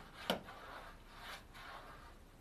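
Paintbrush rubbing resin onto a car body panel in a few brief scratchy strokes, with one sharp tap about a third of a second in.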